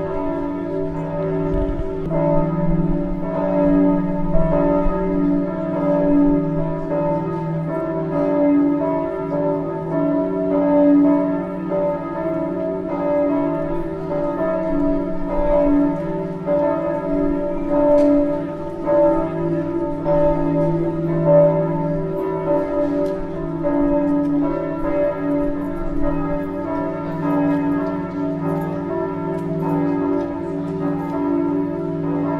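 Several church bells ringing together in a continuous peal, their overlapping strikes and long hum blending into a steady wash of ringing with no pause.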